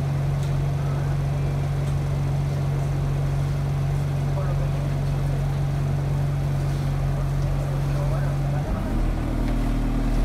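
Bus engine heard from inside the passenger cabin, running with a steady low hum; near the end its note changes suddenly to a different, deeper pitch.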